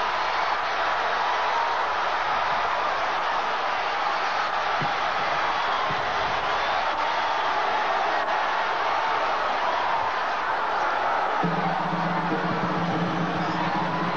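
Stadium crowd noise, a dense steady roar of cheering after a game-winning kick. About two and a half seconds before the end, a held low note joins in.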